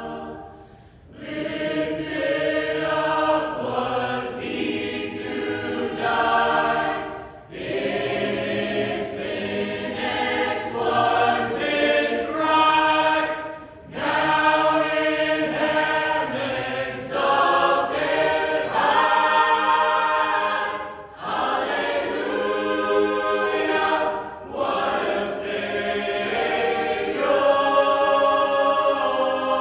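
Mixed choir singing in phrases of several seconds, with short breaks between them. The singing starts about a second in.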